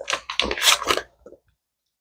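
Shredded-gum pouch crinkling in a few short crackles as gum is pulled out, then the sound cuts out completely.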